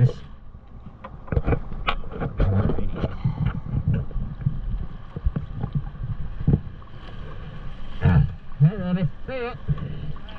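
Seawater lapping and slapping against the boat's stern and around the diver's fins as he sits with his feet in the water, a run of irregular small knocks and splashes. A man's voice speaks near the end.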